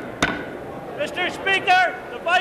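A wooden gavel struck once on the Speaker's rostrum, a single sharp crack about a quarter second in. About a second in, a man's loud call follows.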